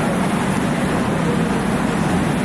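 Steady low rumble of a busy railway platform, with train and crowd noise blended together.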